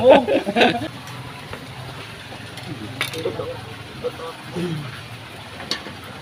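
A man's voice talking during the first second, then a low murmur of background with faint snatches of voices and a couple of sharp clicks.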